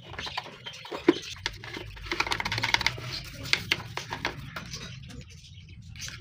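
Toothbrush bristles scrubbing and scratching caked grime from the plastic vent slots of a juicer-blender motor base, a fast, irregular run of small scratchy clicks that is busiest in the middle.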